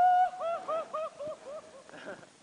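A person's high-pitched whoop: one long held note, then a run of short, slightly falling hoots, about five a second, fading away.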